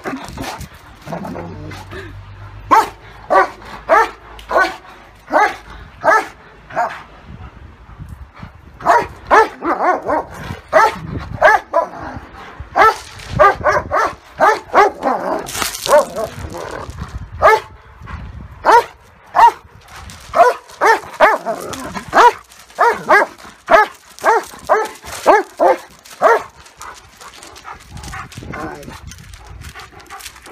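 Dogs barking in quick runs of short, sharp barks, about two to three a second, with brief pauses between runs, during rough play-fighting between a German Shepherd and a Great Dane.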